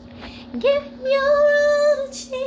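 A woman singing a gospel song, sliding up into one long held note about a second in.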